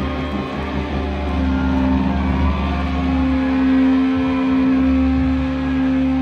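Live rock band's electric guitars and bass holding a sustained drone without drum beats: a steady low note with slowly shifting higher tones above it.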